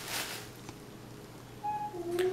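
Soft rustling of artificial flower stems being handled, fading out, then a brief faint steady tone near the end.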